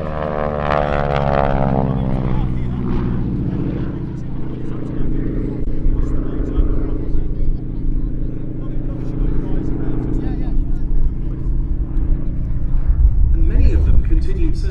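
North American Harvard IV's Pratt & Whitney R-1340 Wasp nine-cylinder radial engine and propeller on a display pass. Its pitch falls steeply over the first few seconds as it goes by, then settles into a steady drone, swelling again near the end.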